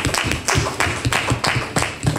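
A short round of applause: several people clapping in a quick, uneven patter.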